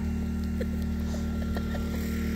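Wood fire crackling in a steel fire pit, with a few small scattered pops, over a steady low hum.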